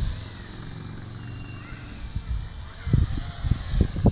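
Small quadcopter drone's electric motors and propellers humming steadily in flight, heard through a camera riding on the drone, with short low gusts of wind on the microphone in the last second.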